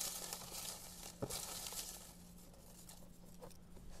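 Folded paper slips rustling in a clear plastic tub as a hand rummages through them to draw one out, faint and loudest in the first two seconds.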